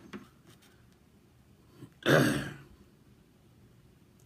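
A man clears his throat once, a short rasping burst about two seconds in; otherwise only low room tone.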